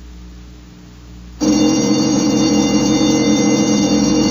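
Radio-drama sound effect: after a faint hum, a loud, steady, ringing alarm-like tone made of several pitches cuts in about a second and a half in and holds, where the ship's engines fail to fire at the end of the countdown.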